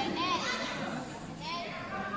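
Chatter and short calls from young voices in a large hall, with no single clear speaker.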